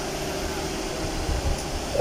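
Steady background hum and hiss of a large indoor workshop, like ventilation or air-conditioning running, with no distinct tool strikes.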